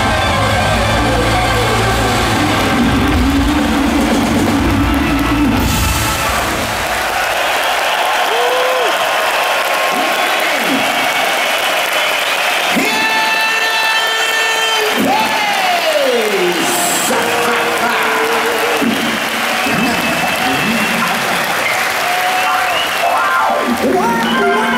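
Live rock band with drum kit playing at full volume for about six seconds, then dropping away to an arena crowd cheering and applauding, with several swooping tones that rise and fall over the crowd noise.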